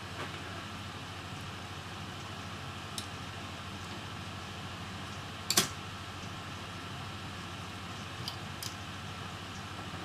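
Steady room hum with a few light clicks and taps from handling small laptop parts and tools on a desk, the clearest about five and a half seconds in.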